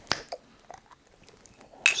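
A bottle of guava mango tea being handled: one sharp click right at the start, then a fainter click and a couple of light ticks.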